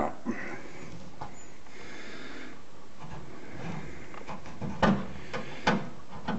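Quiet handling noise: a few sparse soft clicks and knocks as a spring-loaded cleco clip is worked with its pliers in a drilled hole in a car body panel, with two stronger knocks near the end.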